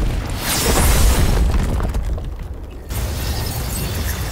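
Cinematic fight sound effects: a deep, rumbling boom with a rushing whoosh about half a second in. After a brief dip near three seconds, the low rumble returns as a red energy aura flares up.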